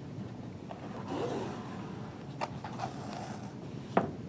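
Cord rubbing and scraping as it is drawn through a hole punched in a hardcover book's spine, with a few light taps from handling the book.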